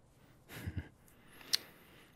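Close-miked mouth sounds: a soft breath about half a second in, then a single sharp kiss smack of the lips about a second and a half in.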